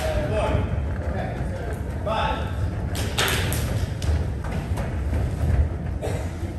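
Dull thuds of feet running and landing on a sprung cheerleading floor, with a couple of sharper impacts and scattered voices.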